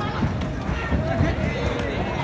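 Men's voices shouting and calling out over a crowd's background noise as defenders tackle a kabaddi raider, with a few short knocks.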